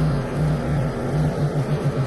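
Engine of a Westwood S1300 ride-on lawn mower running steadily as the mower is driven across the lawn, a continuous low drone with a faint regular pulse.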